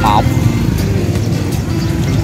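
Steady low rumble of motorbikes and a large waiting crowd at a busy school gate.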